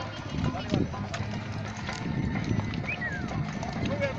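Many horses walking past on a dirt track, their hooves clip-clopping irregularly, under the chatter of riders' voices.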